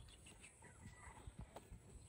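Near silence with a few faint, irregular soft taps: bare feet walking on a dirt path.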